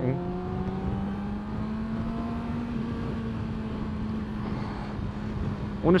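2020 Yamaha R6's 599 cc inline-four engine under way, heard from the rider's seat. Its note rises gently over the first couple of seconds, then holds steady over a low road rumble.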